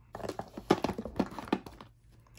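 Small gel polish bottles clicking and knocking against each other and against the packed nail supplies as they are set down in a box: a quick run of irregular light knocks.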